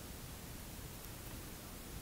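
Faint steady hiss of microphone background noise, with no distinct events.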